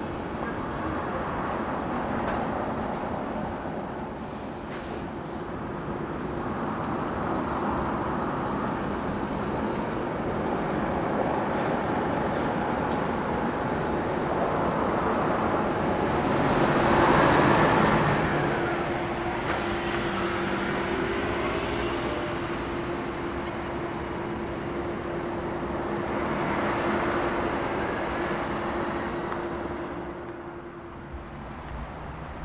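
Road traffic passing on a town street, vehicles swelling and fading every several seconds. The loudest is a large highway coach driving past just past the middle, and a steady low hum runs on after it.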